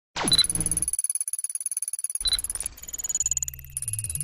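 Electronic sci-fi intro sound effects: a quick falling sweep at the start, then a rapid, even stuttering pulse with short high beeps, shifting to steady high and low tones in the last second or so.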